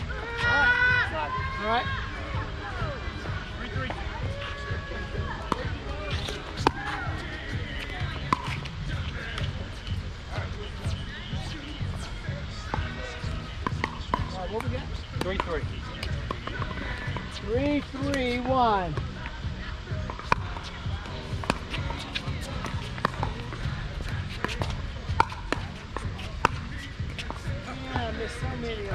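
Pickleball paddles hitting the plastic ball: sharp pops at uneven intervals, some near and many fainter ones from neighbouring courts. Voices call out about a second in and again a little past the middle.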